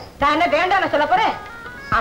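A voice in a drawn-out, sing-song delivery over film-soundtrack music. A few steady held notes sound near the end.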